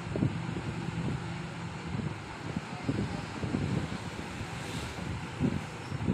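Marker writing on a whiteboard: short, irregular strokes over a steady low background rumble.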